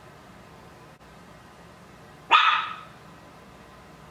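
A dog barks once, a single sharp bark about two seconds in, over a quiet room.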